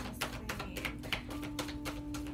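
A deck of affirmation cards being hand-shuffled overhand: a quick, uneven run of card flicks and taps, about six a second.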